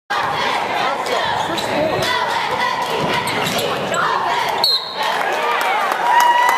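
Basketball being dribbled on a hardwood gym floor, a string of sharp bounces, with the squeak of sneakers on the court and spectators' voices echoing in the large hall.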